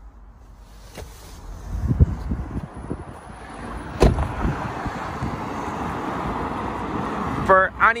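Bumps and movement of someone climbing out of a Toyota RAV4, then its door shut once with a sharp slam about halfway through, followed by a steady hiss of wind and traffic.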